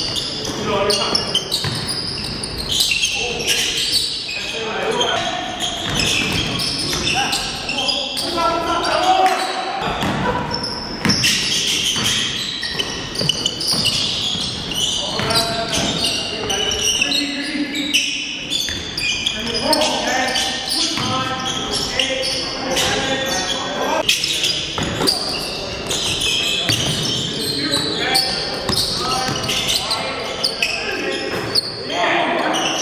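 Indoor basketball game: a basketball bouncing on a hardwood gym floor amid players' indistinct shouts, with echo from a large hall.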